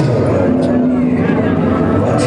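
People's voices in a crowd over a loud, steady din, with a few held voice-like tones.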